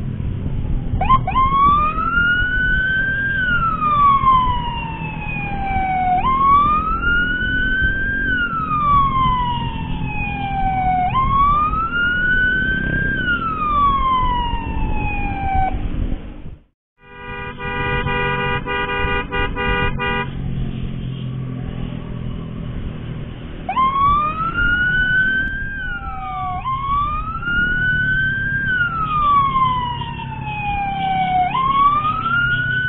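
Emergency siren wailing in slow cycles, each a quick rise and a longer fall, over the low rumble of a moving motorcycle and wind. The sound drops out briefly past the middle. Then comes a steady multi-note horn blast of about three seconds, and the wail resumes with faster cycles.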